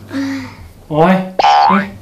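Thai speech with a voice exclaiming "โอ้ย" (oy), then a short rising boing-like glide, a comic sound effect, about one and a half seconds in.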